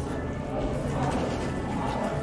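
Indistinct chatter of other diners filling a busy restaurant dining room, with faint music underneath.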